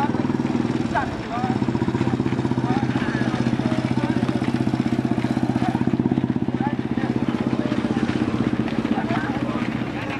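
A small engine idling steadily nearby, with a fast, even pulse over a low hum that dips briefly about a second in. Voices can be heard faintly over it.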